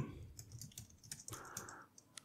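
Faint computer keyboard typing, a scattering of soft key clicks, with a brief soft rushing noise a little past the middle.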